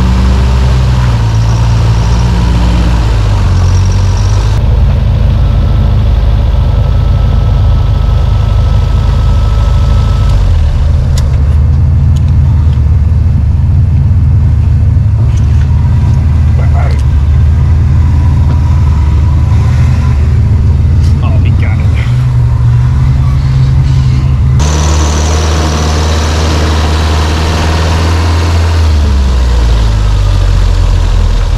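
Off-road vehicle engine running loud at crawling speed, its pitch rising and falling with the throttle.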